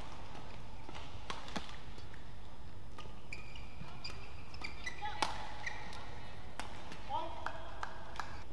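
Badminton rally: a feather shuttlecock is struck back and forth with rackets, giving sharp cracks about once a second, with the loudest hit about five seconds in. Court shoes squeak briefly on the court floor between the hits.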